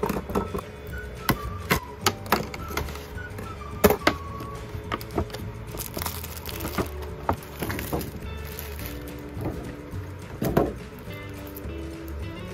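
Clear plastic wrap and packaging crinkling and clicking in short, irregular bursts as it is handled, over steady background music.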